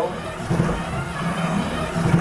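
3D-printed power hacksaw running: its motor-driven hacksaw blade strokes back and forth across a solid steel all-thread rod, over a steady motor hum.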